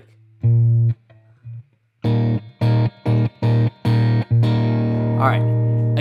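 Electric guitar playing short, clipped chords over the same low note: one, a pause, then a quick run of about six, before a chord is left to ring near the end. A voice is briefly heard near the end.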